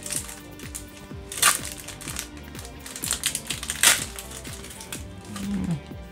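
Foil booster-pack wrapper crinkling and tearing as it is opened, with two louder crackles about one and a half and four seconds in, over steady background music.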